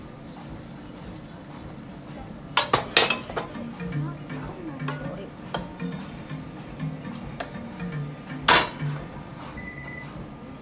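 Metal wok clanking against the cast-iron grate of a gas stove: a quick cluster of sharp clinks just before three seconds in and one more loud clink near the end, over a steady low hiss.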